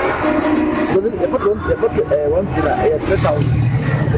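A man talking, with a large vehicle's engine idling underneath as a steady low rumble that grows stronger near the end.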